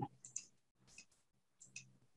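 A few faint, separate computer mouse clicks over near silence.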